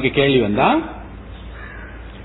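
A man's voice in speech, one drawn-out syllable falling in pitch in the first second, then a pause with only a low steady hum.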